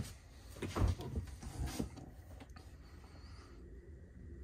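Faint knocks and a short click as the freezer door of an RV gas-and-electric refrigerator is opened.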